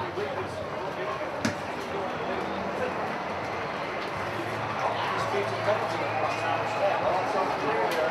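Indistinct voices and chatter echoing in a stadium players' tunnel, over a steady background hum of the ground, with one sharp knock about a second and a half in.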